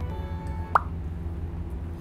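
A single short plop sound effect, a quick upward-sweeping bloop, about three-quarters of a second in, over a steady low hum.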